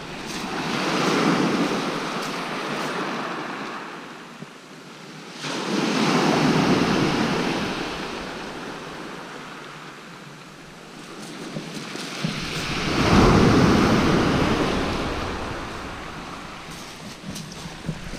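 Sea waves breaking on a shingle beach in three surges a few seconds apart, each swelling up and then fading away.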